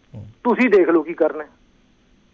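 A man speaking briefly over a telephone line, his voice thin and narrow-sounding.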